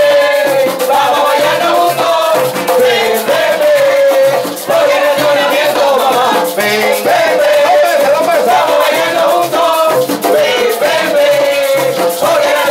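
Live plena music: pandereta frame drums beating a steady rhythm, with a rattling percussion part and a held, wavering melody line over it.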